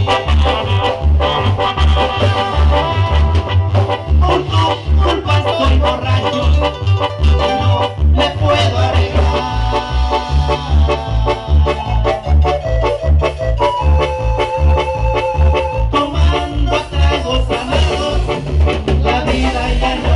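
Live band playing an instrumental stretch of Latin dance music through a loud PA system, with a steady heavy bass beat under a melody line.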